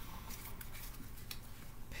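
Faint, scattered light clicks from a deck of tarot cards being handled, over a low steady hum.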